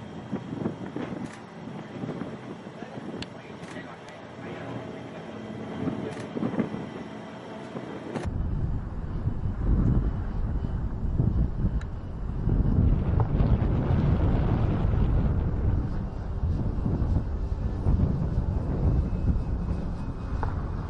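A steady engine drone, then about eight seconds in, heavy wind buffeting the microphone, gusting on over the drone.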